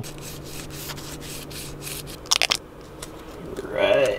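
A cloth rubbing over a van's seat base in quick repeated wiping strokes, cleaning grease off the surface with alcohol. A short cluster of sharp crackling clicks follows a little after two seconds in.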